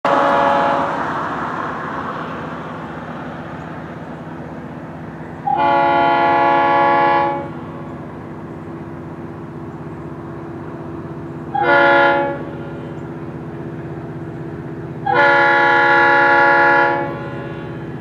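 Florida East Coast Railway locomotive 433's multi-chime air horn sounding the grade-crossing signal: the fading end of one blast, then a long blast, a short one and a long one. A steady low rumble from the approaching train runs underneath.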